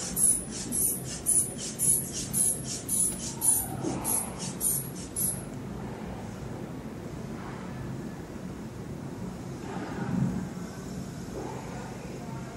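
Rubber hand bulb of a manual sphygmomanometer squeezed about a dozen times, quick airy puffs about two a second, pumping the arm cuff up to about 180 mmHg. It then stops, and a quieter stretch follows while the cuff slowly deflates through the release valve.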